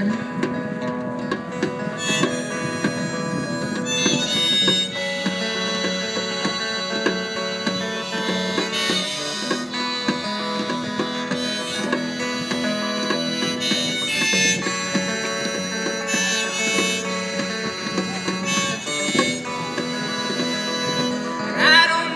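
Live band's instrumental break: electric guitar and a hand drum keep a steady rhythm under a lead line of long held notes.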